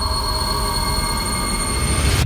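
Trailer sound-design swell: a loud, sustained, high-pitched screeching wash with steady whining tones over a deep low rumble, building slightly toward the end.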